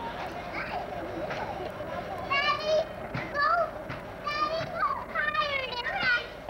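Young children shouting and squealing at play, with several high-pitched calls in the second half.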